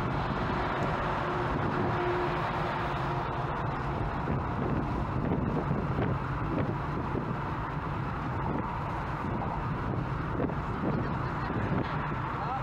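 Steady road and wind noise from a car cruising on a motorway, heard from inside the car, with a steady tone held for about the first three seconds.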